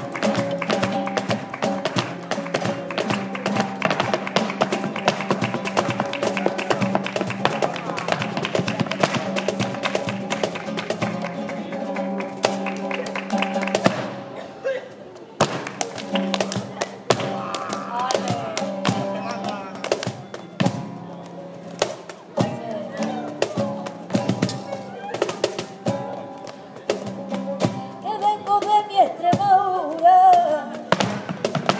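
Live flamenco: nylon-string guitar playing under the dancer's rapid zapateado footwork stamping on a portable dance board, with cajón and hand-clapping (palmas). The fast stamping breaks off about halfway, then comes back more sparsely, and a voice joins near the end.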